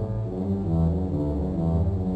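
Church organ played as a duet by two organists at one console. Sustained full chords sound over deep bass notes that move about twice a second.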